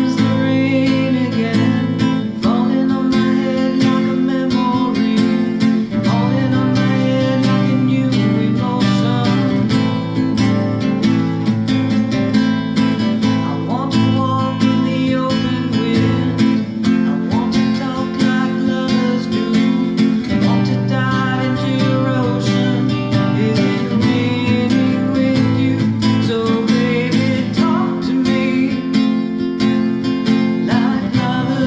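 Acoustic guitar strummed in a steady rhythm, ringing chords accompanying a song.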